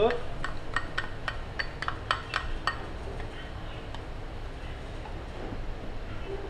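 A wooden spatula stirring sauce in a stainless steel mixing bowl and striking its side, a quick run of about nine light ringing clinks, three or four a second, in the first three seconds.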